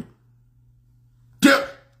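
A pause in a man's speech lasting over a second, then one short, sharp burst from his voice about one and a half seconds in that fades quickly.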